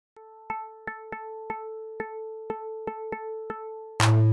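Quiet electronic music intro: a short, pitched, cowbell-like synth hit repeats about ten times in a syncopated rhythm over one held tone.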